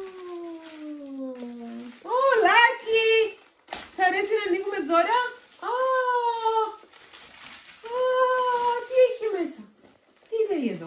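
A large dog whining in long, drawn-out cries: a first one that slowly falls in pitch, then four more of about a second each that rise and fall.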